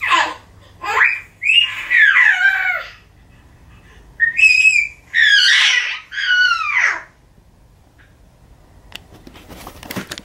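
A baby's high-pitched vocal sounds: about five short calls in the first seven seconds, each sliding down in pitch.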